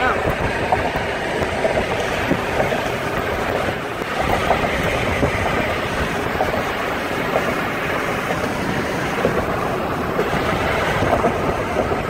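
Steady road and wind noise of a moving car, with wind buffeting the microphone.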